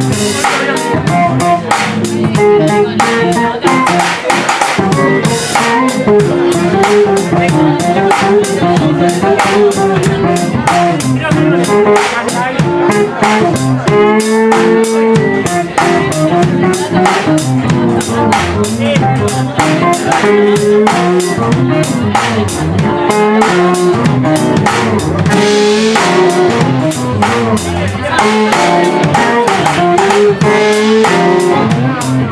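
Live band playing loudly: drum kit keeping a steady beat on the cymbals, with keyboard and guitar.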